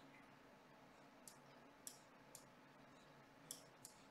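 Faint computer mouse clicks: about five short, sharp clicks at uneven intervals over near silence.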